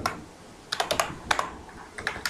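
Computer keyboard typing: about half a dozen quick keystrokes, starting a little under a second in after a short pause.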